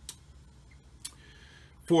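Quiet pause in a man's speech with two faint clicks about a second apart; his voice starts again near the end.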